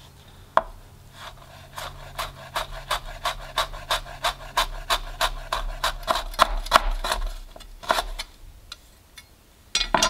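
Knife thinly slicing a lemongrass stalk on a bias: a steady run of short cuts, about three to four a second, that stops a couple of seconds before the end.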